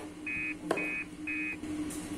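Electronic beeper sounding three short, evenly spaced beeps about half a second apart. A single sharp knife chop on a cutting board falls between the first and second beeps, over a steady low hum.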